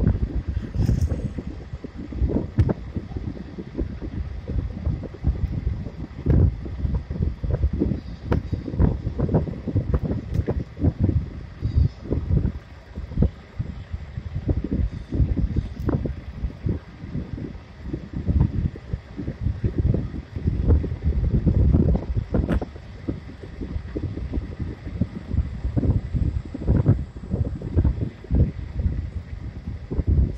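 Wind buffeting the microphone in irregular low gusts while riding along a road.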